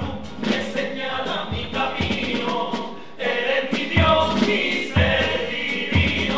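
A chirigota carnival chorus singing together in unison, over a steady drum beat.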